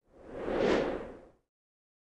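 A single whoosh sound effect that swells and fades away within about a second and a half, marking the transition to an end logo.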